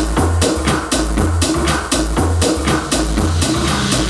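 Deep tech / tech house DJ mix: electronic dance music with a steady beat, a deep pulsing bassline and regular crisp hi-hats.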